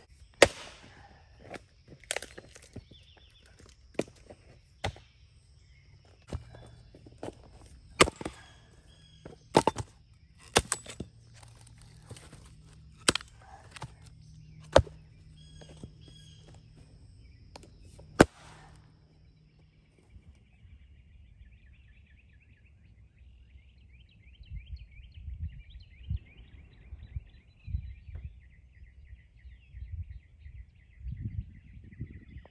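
A Gransfors Bruk Cruiser axe, a two-and-a-half-pound head, chopping and splitting firewood on the ground: about a dozen sharp strikes, one every second or two, for the first eighteen seconds. After that come faint birdsong and low wind noise.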